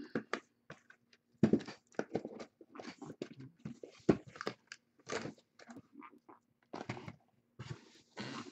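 Foil trading-card pack wrappers crinkling and crunching in irregular bursts as packs are torn open and handled, over a faint steady hum.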